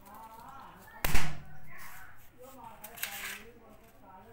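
A single sharp, loud bang about a second in, with a brief ring after it, over faint voices talking in the background.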